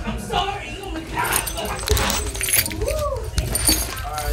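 A British Shorthair kitten crying out while play-fighting with a hand, over rubbing and scuffling noise from the handling. There are short cries early on and one rising-then-falling cry about three seconds in.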